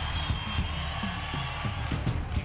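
Live worship band playing the opening of a song: a steady drum beat, about three hits a second, under bass, held high chords and cymbal ticks.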